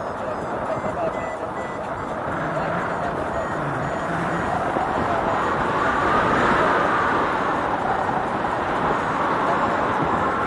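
Wind rushing over the camera microphone in paragliding flight, a steady roar that swells and peaks about two-thirds of the way through.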